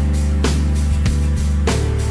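Instrumental background music with a steady beat.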